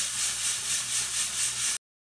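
A pot of rice and black beans boiling down on the stove: a steady hiss that swells and fades about three times a second as the last of the cooking water bubbles off. It cuts off suddenly near the end.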